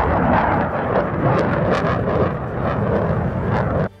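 Fighter jet flying past in afterburner: a loud, steady jet roar that cuts off suddenly near the end.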